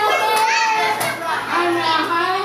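Children's voices speaking aloud together, repeating phrases as in a classroom language drill; the words are not clear.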